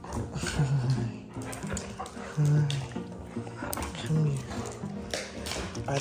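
Dogs at play, including a golden retriever puppy: three short, low growly sounds and some scuffling clicks, over background music.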